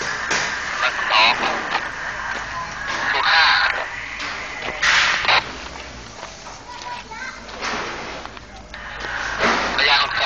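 Voices talking, with two short noise bursts about five seconds in.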